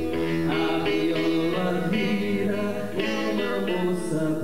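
A man singing live to his own acoustic guitar, a steady run of plucked chords under the vocal line.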